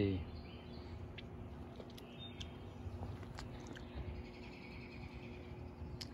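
Quiet outdoor background with a faint steady hum and a few faint, short bird chirps.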